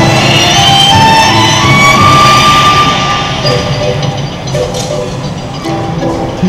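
Music from the Nippon TV giant clock's show playing over its loudspeakers, with held notes and plucked notes; it drops noticeably quieter about halfway through.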